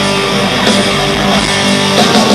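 Heavy metal band playing loud and live, electric guitar to the fore over bass and drums.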